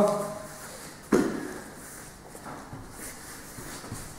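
Two grapplers shuffling and shifting on foam mats as they reset a drill, with one sudden, loud sound about a second in.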